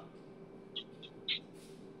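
Faint marker writing on a whiteboard: three short high squeaks close together about a second in, over a low steady hum.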